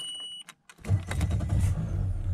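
A short high-pitched beep at key-on from the Mercury Pro XS 115 outboard's warning horn. About a second in, the four-stroke outboard starts and settles into a low, steady run.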